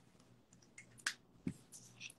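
A few faint, sharp clicks and taps, the clearest about a second in and another about half a second later, with a brief faint scratch near the end, from marker and paper handling at the signing table.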